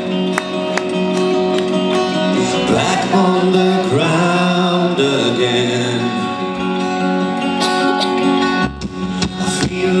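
A pop-rock song played live: a man sings into a microphone over guitar accompaniment.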